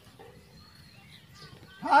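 A quiet pause in a Bhojpuri devotional song, with only faint background noise; near the end a voice slides up in pitch and starts singing again.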